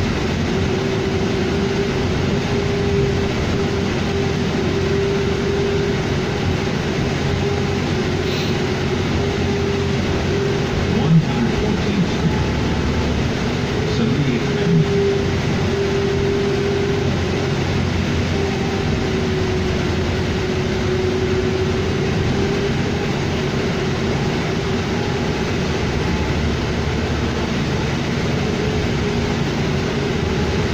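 Cabin noise of a 2007 New Flyer D40LFR diesel city bus on the move: a steady drone with a whine that wavers slightly in pitch, and a couple of brief knocks about a third and halfway through.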